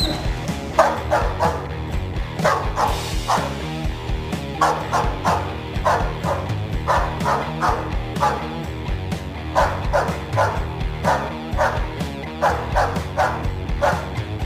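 A dog barking again and again in quick runs of three or four barks, a pause of a second or so between runs, over background music.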